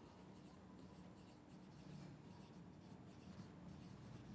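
Faint strokes of a marker pen writing on a whiteboard, irregular short scratches as words are written, over a low room hum.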